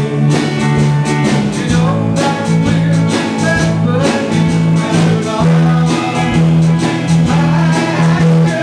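A live band playing a country-pop song: electric guitar, acoustic guitar and bass guitar, with strummed chords over a steady bass line.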